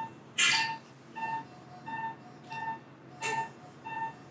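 Operating-theatre patient monitor beeping its pulse tone, a short single-pitched beep about three times every two seconds, marking each heartbeat of the patient on the table. Two short noisy bursts, the loudest sounds, come about half a second in and a little after three seconds.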